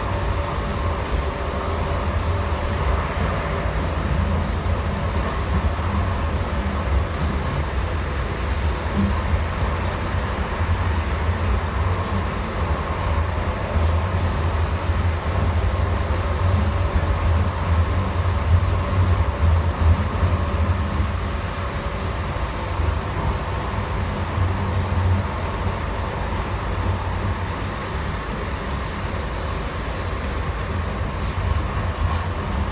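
Interior running noise of a Siemens-Duewag U2 light rail car under way: a steady low rumble with a faint steady tone above it, swelling a little past the middle and easing toward the end.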